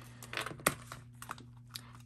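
Several light clicks and taps from things being handled on a desk, the sharpest about two-thirds of a second in.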